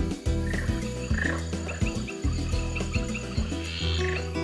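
A frog calling in a run of short, high chirps, about four a second, over soft sustained background music.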